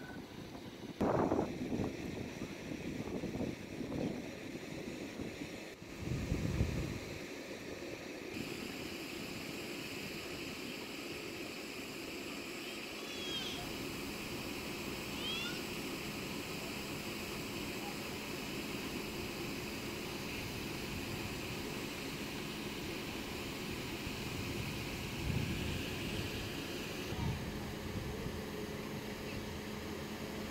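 Outdoor street ambience: a steady hiss with faint, indistinct voices, a few louder bumps in the first several seconds, and two short high chirps in the middle.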